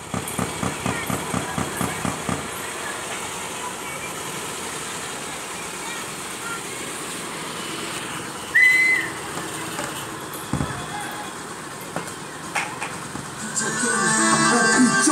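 Street traffic ambience with indistinct voices and vehicle engines. A rapid rhythmic beating runs for the first couple of seconds, a short shrill whistle sounds about eight and a half seconds in, and a single thump comes a couple of seconds later.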